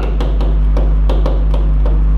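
Pen tip tapping and ticking against a hard writing board while handwriting, in quick irregular strokes about four a second, over a steady low hum.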